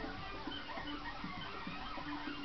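A television soundtrack playing in the room: a zoo programme's background music, short pitched notes and glides, between lines of narration.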